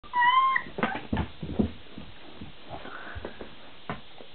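Three-week-old golden retriever puppy giving one short, high-pitched whine at the start, followed by a quick run of soft knocks.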